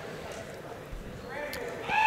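Hushed gym ambience during a free throw: a low murmur from the crowd with a few soft knocks of the basketball bouncing on the wooden floor. Near the end a tone rises and is then held.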